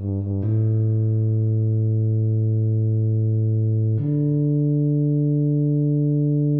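Tuba playback of the score: two quick low notes, then a long held low note, and about four seconds in, another long held note a little higher.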